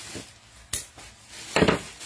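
Scissors and plastic-bagged clothing being handled: a sharp click about three-quarters of a second in, then a louder, brief rustling burst near the end.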